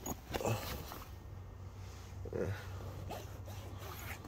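Canvas window flap of a pop-up camper being unzipped and pulled back, with zipper and fabric noise at the start, then quieter handling. A brief faint whine comes about two and a half seconds in.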